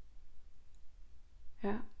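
A pause in a woman's talk: quiet room tone with a faint low hum, then she says a short "ja?" near the end.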